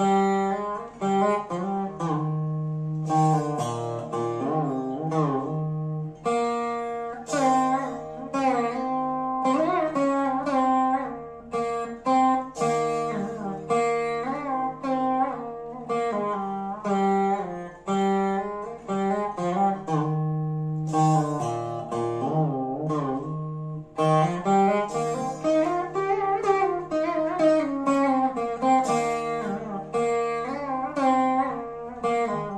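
Saraswati veena playing Carnatic music in raga Kambhoji: a run of plucked notes, many bent with sliding pitch ornaments, over a steady low drone.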